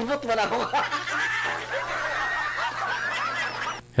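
A woman laughing in a run of giggles, heard over a video-call line, stopping just before the end.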